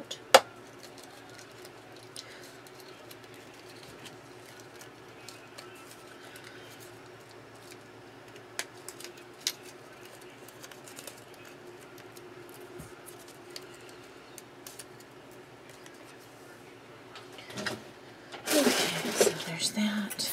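Small handling sounds as cut cardstock is picked out of a thin metal cutting die. There is a sharp click just after the start, scattered light ticks, and a louder rustle near the end, over a faint steady hum.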